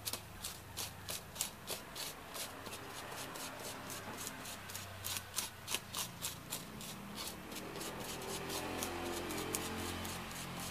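Rhythmic scraping of a small round dark object rubbed through black powder on paper, about two to three strokes a second, merging into a steadier rubbing in the last few seconds, over a faint low hum.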